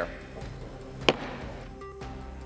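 A single wooden gavel strike on the House rostrum about halfway through, sharp and loud with a brief ring, marking the chair's declaration that the House is in recess.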